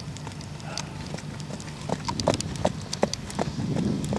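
A horse's hooves on a sand-and-gravel path, led at a walk and then at a trot. From about halfway through, the hoofbeats become sharp, loud clip-clops at about four a second.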